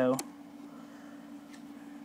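A steady low hum from the homemade electronics inside a costume helmet (its fans and the audio pickup feeding an ear speaker), with a faint click about one and a half seconds in.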